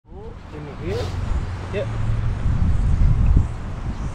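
Wind buffeting the microphone in an irregular low rumble, loudest near three seconds in, with a young child's high voice near the start and a man's brief "yep".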